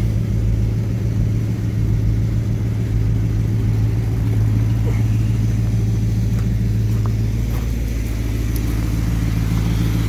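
Carter Thermoquad-carbureted car engine idling steadily, its automatic transmission put into drive with the idle set slightly high at about 800 rpm.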